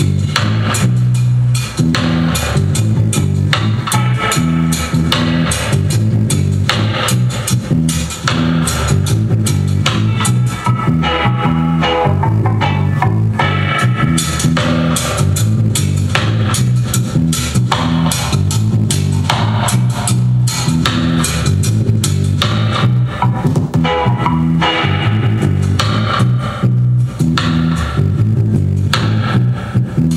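Bose Solo 5 soundbar playing a song loudly, streamed from a phone over Bluetooth: guitar, bass and drums over a steady repeating bass line.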